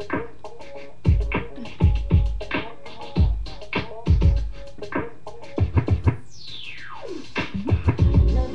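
Instrumental intro of an electronic pop backing track: a drum-machine beat with record-scratch effects, and a long falling sweep near the end.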